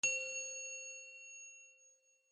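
A single bright bell-like ding, struck once and ringing away over about two seconds. It is the sound effect for an animated logo reveal.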